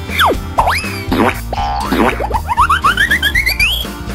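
Cartoon sound effects over children's background music with a steady low bass: a quick falling whistle, springy boing-like sweeps, then a run of short notes stepping upward in pitch near the end.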